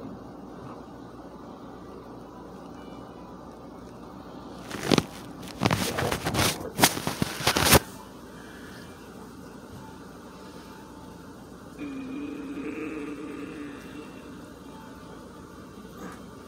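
Handling noise close to the microphone: about three seconds of rustling and knocks from hands squeezing a squishy stress ball over a paper towel, starting about five seconds in.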